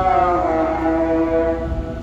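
A voice chanting in long, drawn-out held notes that step up and down in pitch, in the manner of a devotional recitation.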